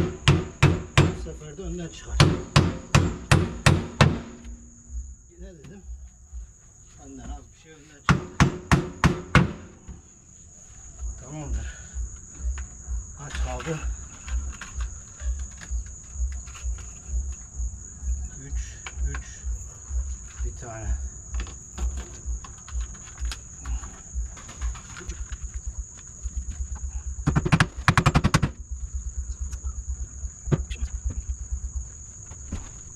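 Quick runs of hammer blows, about three or four a second, in three bursts: at the start, around eight seconds in and near the end, with softer, lower knocking in between. A steady high-pitched insect drone runs underneath.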